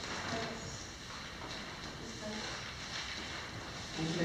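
Steady hiss of room noise with faint murmured voices in the background.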